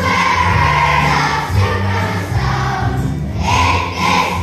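A class of young children singing together as a choir over steady low instrumental accompaniment, the voices coming in strongly right at the start.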